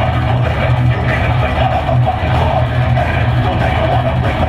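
A heavy metal band playing live and loud through a concert PA, heard from within the crowd: distorted electric guitars over heavy bass and drums, with a strong, steady low end.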